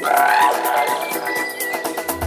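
House music mixed by a DJ, playing with its bass cut out: steady rapid hi-hats and mid-range chords with no kick drum underneath, and a swelling sweep near the start.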